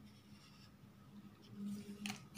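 A felt-tip marker scratching on paper as it writes and draws a reaction arrow, faint at first and louder near the end.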